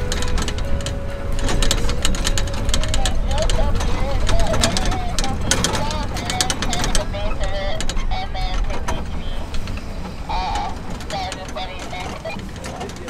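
Ford pickup truck driving slowly over a rough dirt track: a steady low engine and tyre rumble with rattles and knocks as it rides the bumps. A wavering squeal comes and goes through the middle.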